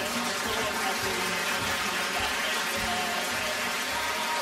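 A man singing to his own acoustic guitar strumming, under steady audience applause.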